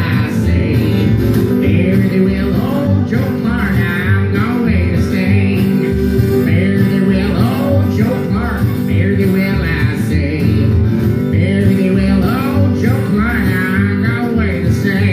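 Live country band playing: acoustic guitar and other strings under singing voices, a song going on without a break.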